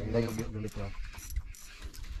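Hand-cranked jigging reel being wound in, its gears ticking.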